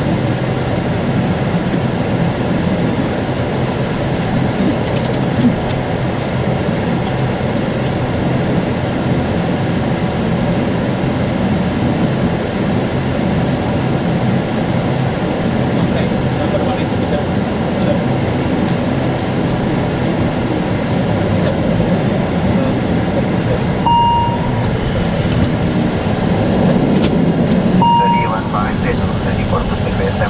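Steady drone of the ATR 72-600's turboprop engine idling, heard from inside the cockpit while the aircraft stands parked. Two short beeps sound about four seconds apart near the end.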